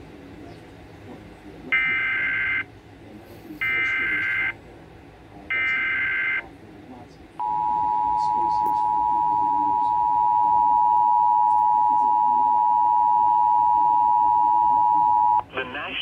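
Emergency Alert System tones played through a computer speaker: three short bursts of SAME header data tones, about a second each with a second between them, then the two-tone EAS attention signal held steady for about eight seconds, marking the start of a tornado warning. The attention tone cuts off just before the voice announcement.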